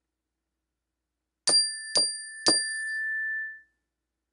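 A bell-like chime struck three times about half a second apart, each strike giving the same bright high ring; the last ring holds and fades out.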